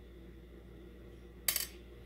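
A metal spoon set down with one short clink about one and a half seconds in, over a low steady hum.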